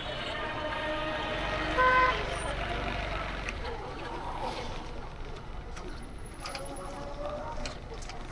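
Busy street traffic heard from a moving motorcycle, with a short, loud vehicle horn beep about two seconds in.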